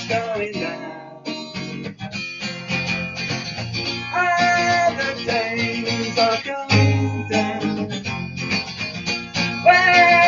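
Steel-string acoustic guitar played in a digitally enhanced improvisation, strummed and picked, with a short thinning about a second in and held notes ringing out about four seconds in and again near the end.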